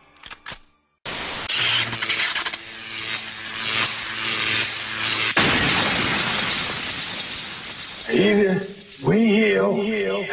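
Loud crashing, shattering noise with a low steady hum under it, starting suddenly about a second in. At about five seconds it changes to a smoother hiss that fades away, and a man's voice takes over near the end.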